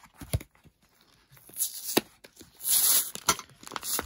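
Cardboard backing of a Pokémon card blister pack being torn open in several ripping pulls from about a second and a half in, the loudest near three seconds, after a few sharp clicks of the plastic blister being handled.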